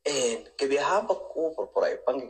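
Speech: a voice talking, with short pauses between phrases.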